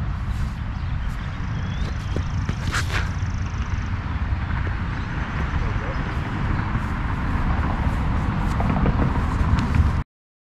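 Outdoor background noise: a steady low rumble, with one sharp click about three seconds in and a thin high tone for a couple of seconds.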